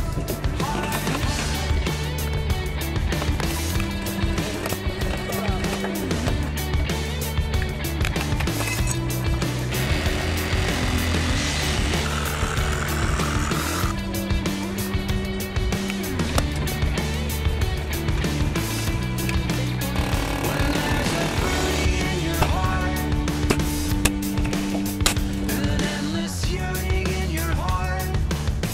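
Background music with a steady drum beat and a bass line that changes note every couple of seconds.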